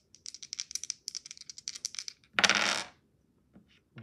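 Two dice rattled in a hand: a rapid run of sharp clicks for about two seconds, then a single louder clatter lasting about half a second, and a couple of faint ticks near the end.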